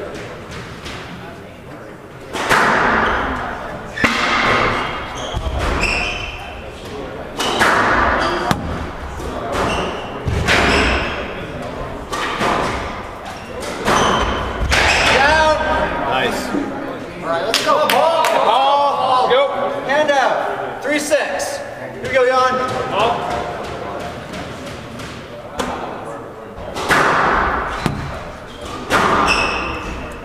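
Squash rally: the ball is struck by rackets and hits the court walls in sharp cracks every second or two, ringing in a large hall.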